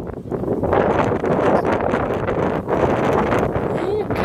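Loud, uneven wind noise buffeting the phone's microphone.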